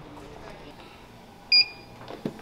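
A wall-mounted hand-scanner biometric time clock gives one short, high electronic beep about one and a half seconds in.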